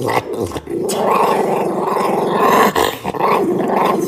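A dog growling while it eats from a bowl: one long, continuous, rumbling growl that starts about half a second in, with a couple of brief catches.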